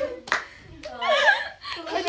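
A few sharp hand claps at irregular intervals, mixed with young women laughing and squealing.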